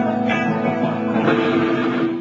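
Electric guitar played alone through an amplifier: a chord struck right at the start and again just after, its notes ringing on.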